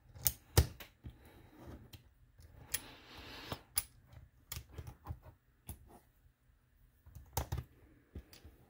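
Plastic Lego bricks and plates being handled and pressed together by hand: irregular sharp clicks and taps, with a short rustle of loose pieces about three seconds in.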